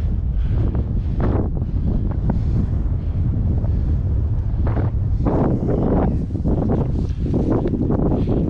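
Wind blowing on the microphone in a steady low rumble, with a run of louder, irregular rushing bursts from about five seconds in.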